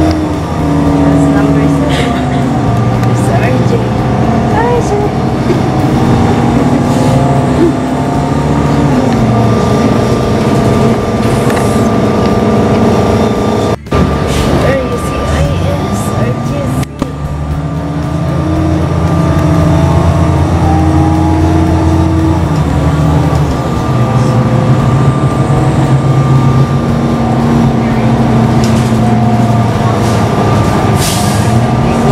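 City bus engine running, heard from inside the bus, its pitch rising and falling several times as the bus speeds up and changes gear, over steady road noise and a thin steady whine. The sound drops out briefly twice near the middle.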